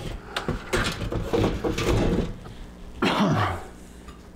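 A solid PC case side panel being set down and handled, giving a run of knocks and scrapes over the first two seconds, followed by a single cough about three seconds in.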